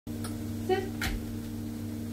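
A steady low hum, with one short word in a high voice about two thirds of a second in and a sharp click about a second in.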